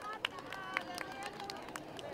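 Scattered, uneven hand clapping from a small group of children, with voices chattering behind it.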